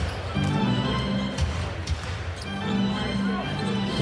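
Arena music playing during live play, with a basketball being dribbled on a hardwood court.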